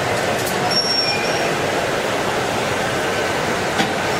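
Gas-fired glory hole and furnace burners of a glassblowing studio running with a steady, even roar.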